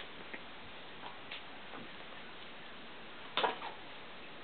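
Cavalier King Charles Spaniel puppies playing: faint scattered ticks and scuffles over a steady hiss, with one louder short sound about three and a half seconds in.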